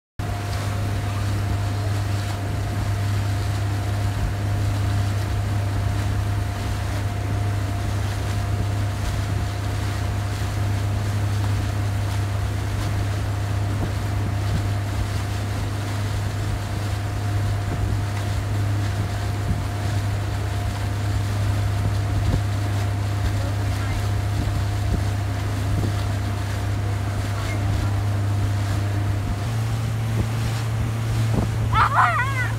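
Motorboat engine running at a steady towing speed, heard from on board as a steady low drone with a faint high tone above it and wind on the microphone. It starts abruptly, and the drone shifts slightly near the end.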